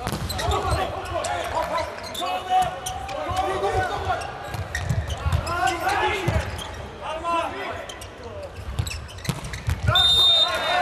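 Volleyball rally in an arena: the ball is struck and hits the floor again and again, with sharp slaps and thuds that echo around the hall. Shouting voices run through the rally.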